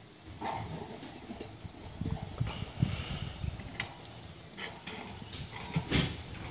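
Handling noise of a portable satellite dish being lifted and fitted onto a tripod mast: irregular scuffs and knocks, with a sharp click a little before the end and another near the end.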